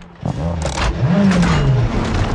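Rally car engine accelerating hard as the car pulls away: the noise jumps up suddenly near the start, then the revs climb and fall away.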